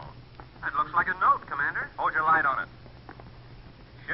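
Speech only: men's voices speaking lines of dialogue in an old-time radio drama, in several short phrases in the first two-thirds.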